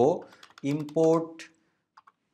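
A short run of computer keyboard keystrokes, a few quick clicks about half a second in, as a word is typed, between stretches of a man's speech.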